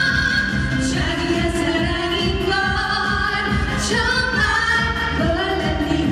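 Trot song sung live by a female vocal group into microphones over a backing track with a steady beat, the voices holding long notes with vibrato.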